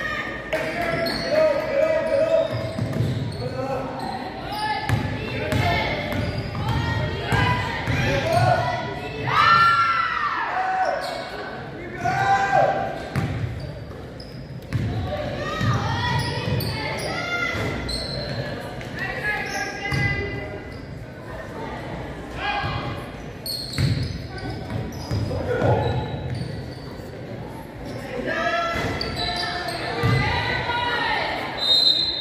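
Basketball bouncing on a hardwood gym floor during live play, with players' and spectators' voices and shouts echoing in a large gymnasium.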